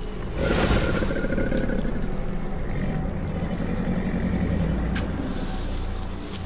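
Film sound design: a low, steady rumble with a sudden swell of noise about half a second in, under a faint music score.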